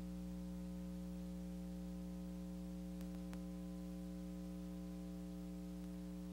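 Steady electrical mains hum and buzz with faint hiss on a VHS tape transfer, with two faint clicks about three seconds in.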